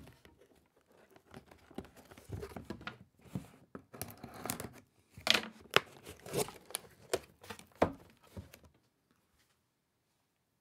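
A cardboard product box being handled, turned over and opened by hand: irregular rustling, scraping and crinkling with a few sharp taps and clicks, which stop near the end.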